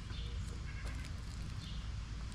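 Light rustling and a few faint clicks from hand-weeding in a wood-chip mulch bed, over a steady low outdoor rumble with faint high chirps.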